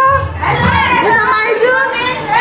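Lively chatter of several people talking at once, voices overlapping.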